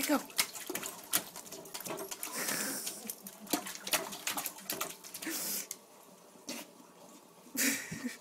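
A dog splashing and pawing at the water in a toilet bowl with its head down in it: irregular sharp splashes and sloshing, dying down for a couple of seconds before a last burst of splashing near the end.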